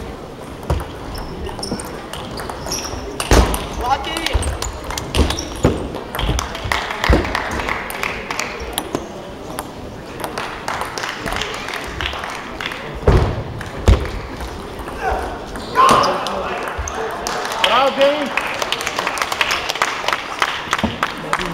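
Table tennis balls clicking off bats and tables in a large, echoing hall, in scattered irregular series, with a few heavier thuds. Voices talk in the background.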